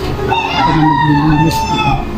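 A long, held animal call, lasting about a second and a half and falling slightly in pitch near its end, over a woman's low speech.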